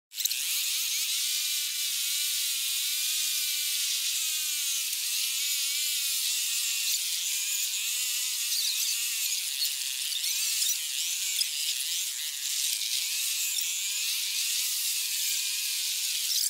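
Thin, tinny music with all its bass cut away, a wavering melody line over a hiss.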